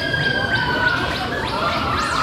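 Spinning Thompson Speed Surf funfair ride with crowd noise, and a long high-pitched wail held for more than a second, then another starting near the end.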